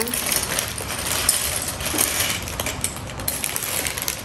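Small plastic LEGO pieces clicking and rattling together inside a clear plastic bag as it is opened and handled, with the bag crinkling.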